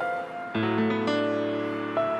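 Soundtrack music: piano playing slow single notes, then a fuller held chord with deep bass entering about half a second in.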